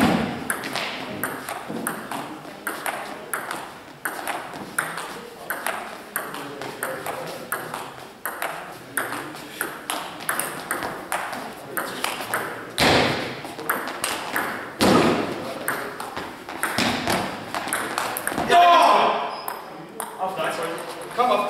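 A long table tennis rally: the celluloid ball clicks off the bats and table in a quick, steady back-and-forth, two to three hits a second, with a couple of harder hits in the middle. Near the end a man gives a loud shout as the rally ends.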